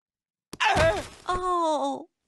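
A man's voice groaning twice, about half a second in, each groan falling in pitch and the second one drawn out: the death groans of a comic heart attack.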